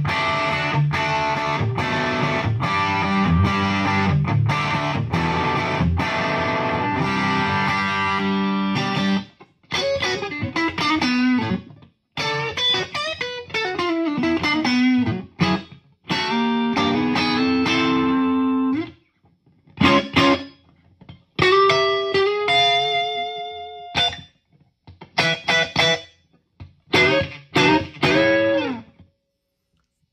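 Electric guitar played through a modded JTM45-clone tube amp with its pre-phase-inverter master volume barely open: about nine seconds of sustained strummed chords, then broken-up single-note phrases with string bends. The tone is a little congested, as master volumes typically are when barely cracked open.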